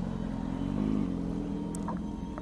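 Yamaha XJ6 motorcycle's inline-four engine running at low revs while rolling slowly, with a brief small rise in pitch a little over half a second in.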